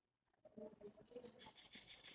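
Near silence: faint room tone, with faint, short pitched sounds coming in about half a second in.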